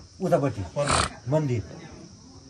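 A man's voice in short spoken phrases, with a loud, rasping, breathy exclamation about a second in.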